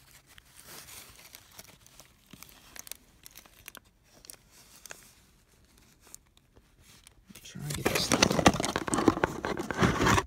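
Foil wrapper crinkling and rustling faintly as fingers pull apart a quesadilla. Near the end comes about two and a half seconds of loud, close crackling as hands handle the foil right at the microphone.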